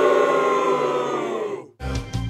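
A single long, held tone with many overtones, sagging slightly in pitch, that cuts off abruptly just before the end.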